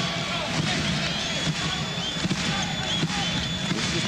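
Arena crowd noise during live college basketball play, with a basketball being dribbled and short sneaker squeaks on the hardwood court.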